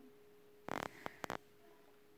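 Quiet handling of a thick lay-flat photo album page: one brief rustle, then two soft clicks about half a second later, over a faint steady hum.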